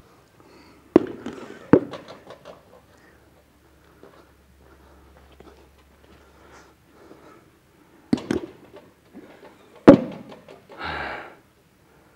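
Rubber bumper weight plates being loaded onto a barbell sleeve, giving sharp knocks as they go on: two close together near the start, and two more about eight and ten seconds in.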